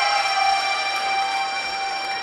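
Recorded music: an accordion holding a long sustained chord.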